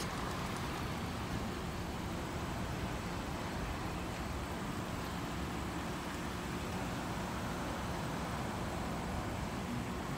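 Steady low rumble of outdoor road traffic and vehicle noise, with no distinct events.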